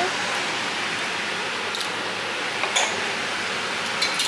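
A sauce-dipped birria taco frying in a pan: a steady sizzle, with a few faint clicks.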